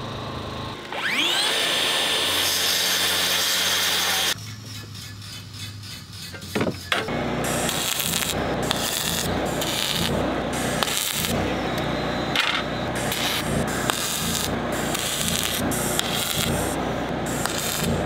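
A power tool's motor spins up with a rising whine, runs steadily for a couple of seconds and stops abruptly. From about seven seconds in, aluminium is arc-welded with a hand-held welding gun: a crackling hiss in repeated stop-start runs.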